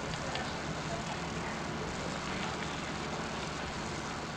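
Steady hiss and low hum of an old archival sound recording, with no speech.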